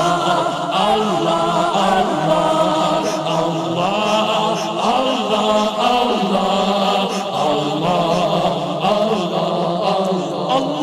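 A male naat reciter singing unaccompanied into a microphone, his voice amplified, over a group of voices chanting a steady held drone behind him.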